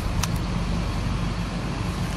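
Steady low mechanical rumble with a constant hum. A faint click comes about a quarter second in.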